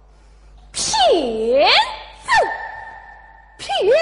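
A Yue opera performer's stylized vocal exclamation. The pitch swoops down and back up in one long cry, then comes a brief glide, a quieter held tone, and a second swoop near the end.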